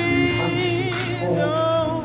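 Several voices singing together, holding long notes that waver in pitch.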